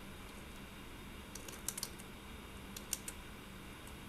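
Computer keyboard typing: a few quick keystrokes in a short burst about one and a half seconds in and another near three seconds, over a steady low hum.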